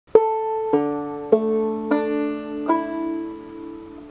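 Five-string banjo played slowly in clawhammer (frailing) style, capoed at the second fret for aDADE tuning: five plucked notes about 0.6 s apart, each ringing on. The last one fades out over the final second.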